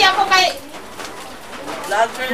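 A person's voice for about the first half-second, then low background noise until voices start again at the very end.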